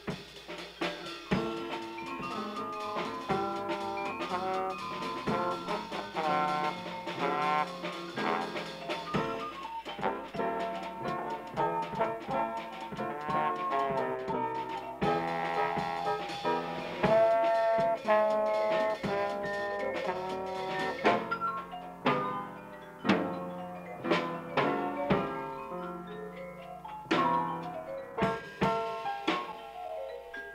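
Jazz played by a small band with a drum kit and a melody line over it, from an old reel-to-reel tape recording. The drum strokes grow sharper and more prominent in the second half.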